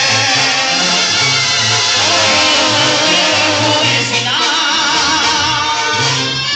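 Loud live Latin band music with a man singing over it and a bass line of held low notes.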